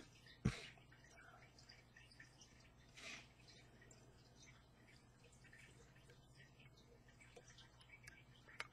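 Near silence: faint steady room hum, with one sharp click about half a second in and a faint soft rustle around three seconds.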